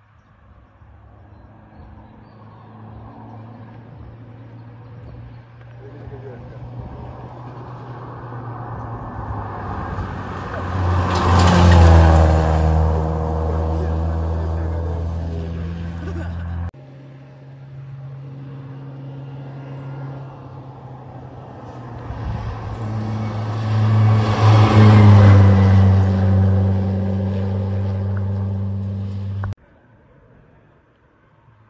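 Two rally cars in turn, each heard coming up the hill with its engine growing louder, peaking as it passes with the engine note dropping in pitch. Each sound stops abruptly, the first about halfway through and the second just before the end.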